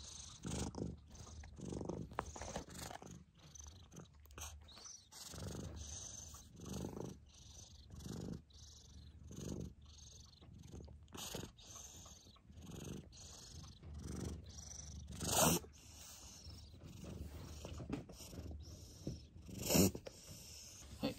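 A white cat purring close up, the purr swelling and fading with each breath about once a second. A brief louder burst stands out about fifteen seconds in.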